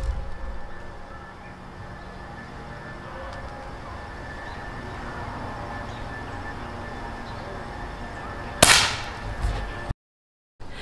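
A single shot from a Crosman Legacy 1000 multi-pump .177 air rifle: one sharp crack near the end, after several seconds of quiet outdoor background.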